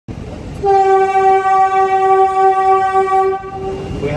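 Kolkata Metro train's horn sounding one long steady blast of about three seconds, starting about half a second in, over the low rumble of the train running through a tunnel.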